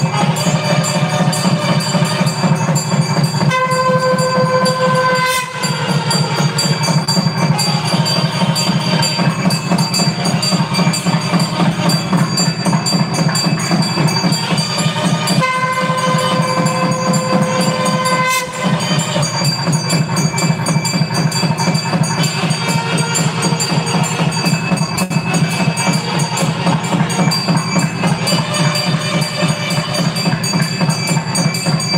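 South Indian temple ritual music, nadaswaram reed pipes over a fast, continuous thavil drum rhythm, played during the deities' ritual bath. Twice a pipe note is held steadily for two to three seconds.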